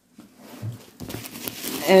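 Rustling and light crinkling as a tote bag is handled, with a soft thump and a small click about a second in.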